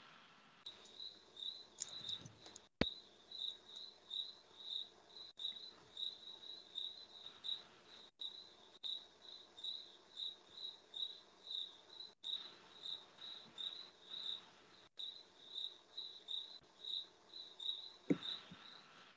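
Cricket chirping faintly over a video-call line, a high chirp repeating evenly about three times a second, with a single click about three seconds in.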